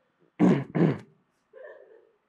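A young man clearing his throat twice in quick succession, two short rough bursts.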